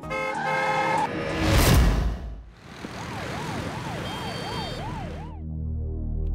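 Dramatised car-crash sound effects: a loud, noisy crash peaks about a second and a half in. After a short lull comes an ambulance siren wailing quickly up and down over a rushing hiss, which stops shortly before the end.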